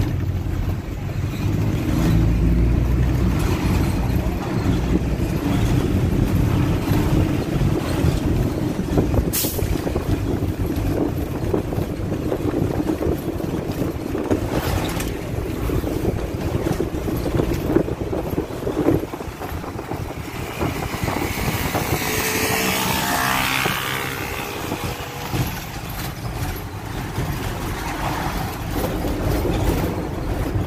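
Inside a moving passenger bus: steady engine and road noise, with occasional sharp knocks and rattles from the body.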